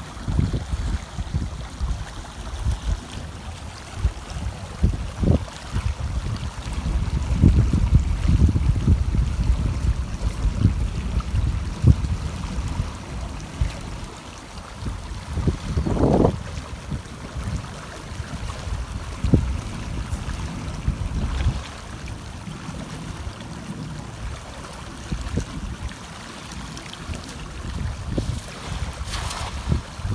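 Wind buffeting the microphone in uneven gusts over the sound of moving water running past the shore.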